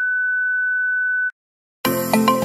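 Test-pattern tone: a single steady, high-pitched pure beep lasting just over a second that cuts off suddenly. After a brief silence, music starts near the end.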